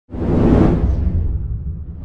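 Whoosh sound effect for an animated logo intro, over a deep rumble: it swells in quickly, peaks about half a second in and fades away.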